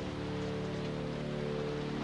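Film score music: a soft, sustained chord held steady, with an even hiss beneath it.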